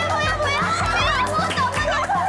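Background music with a steady beat, mixed with excited high-pitched voices and laughter.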